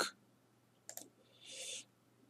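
Two quick computer mouse clicks about a second in, followed by a brief soft hiss, over a faint steady low hum.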